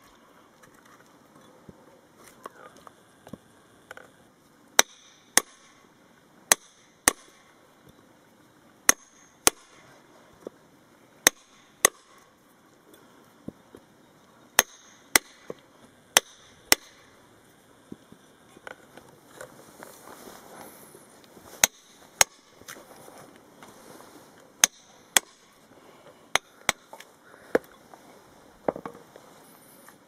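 Hammer striking a steel chisel to cut a notch into a wet timber fence post. The blows are sharp and ringing, mostly in pairs about half a second apart, every second or two.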